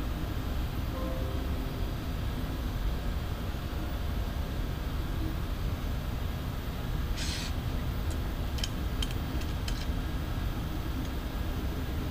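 Steady low rumble of workshop room noise, with a short hiss about seven seconds in and a few faint clicks soon after.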